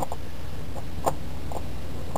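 A few faint, light clicks of a spin-on oil filter being handled and set down on an aluminium filter base, over a steady low hum.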